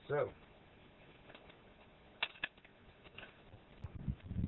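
Mostly quiet, with two light clicks about a quarter second apart a little past halfway and a few fainter ticks around them.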